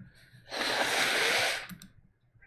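A person blowing their nose into a paper tissue: one forceful blow about a second long, starting about half a second in.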